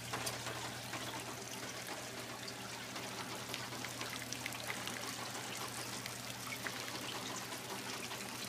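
Water trickling and dripping through stacked barley fodder sprouting trays, many small drips over a steady flow. A steady low hum runs underneath.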